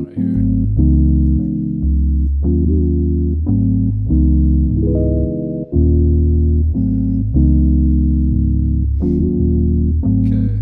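A lo-fi hip-hop beat playing: sustained electric piano chords from an Arturia Stage-73 V Rhodes-style plug-in over a deep, moving bass line from a sampled Rickenbacker bass in Kontakt, its notes changing every half second to a second.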